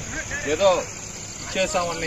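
Speech over a steady high-pitched drone of crickets.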